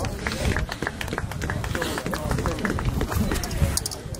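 Distant voices calling across a rugby pitch, with scattered light clicks and knocks over the open-air background.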